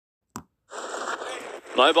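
A single sharp click, then about a second of steady background noise from the race broadcast. A male race caller starts speaking near the end.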